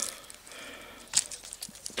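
Quiet outdoor background with a single sharp click just over a second in.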